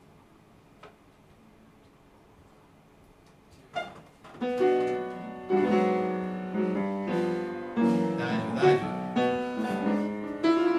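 A few seconds of quiet room sound, then jazz piano comes in about four seconds in, playing ringing chords with strong attacks.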